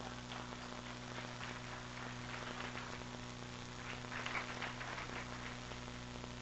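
Faint audience applause, a soft patter of many hands, over a steady electrical hum.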